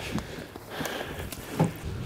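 Faint water splashing and dripping with a few light knocks as a lake sturgeon is lifted by hand out of the water.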